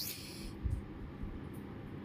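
A brief hiss at the start, then faint handling noise with a couple of soft low knocks as a boiled potato is peeled by hand.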